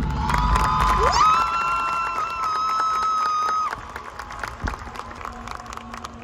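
Stadium crowd cheering in a break in a marching band's music, with one long high whoop that swoops up and holds for about two and a half seconds before the cheering thins out.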